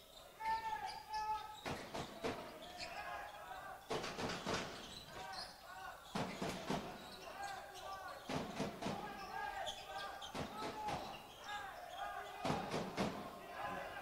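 A handball bouncing and thudding on the wooden court floor of a sports hall, in irregular knocks, amid players' shouts and calls.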